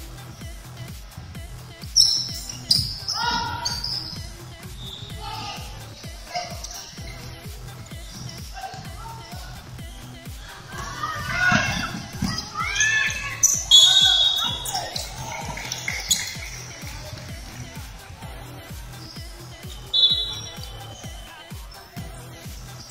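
Indoor basketball play on a wooden court: the ball bouncing, sharp high sneaker squeaks and players shouting, over background music with a steady beat.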